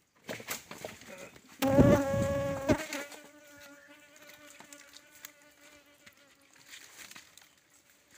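A flying insect buzzing close by, a steady pitched drone that swells loud about two seconds in and then fades to faint, with a few small clicks.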